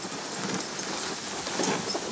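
Dogsled moving at speed over packed snow: a steady noise from the runners sliding on the trail, with faint footfalls of the husky team.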